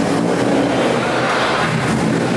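A motor vehicle engine running steadily at idle, under a general background din.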